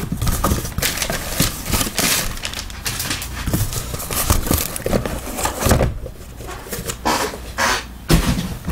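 A tape-sealed cardboard shipping case being torn open by hand: rasping tape rips and cardboard scrapes as the flaps come up. The card boxes inside are then slid out and set down with light knocks.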